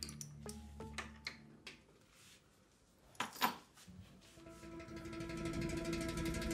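Drama background score: plucked notes over a low drone fade out, leaving a short quiet gap broken by a couple of sharp knocks, then a new music cue of held tones swells in.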